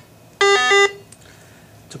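A RATH SmartPhone elevator emergency phone's electronic beep sounds from its speaker in answer to a keypad entry in program mode. The beep lasts about half a second and switches from one pitch to another and back.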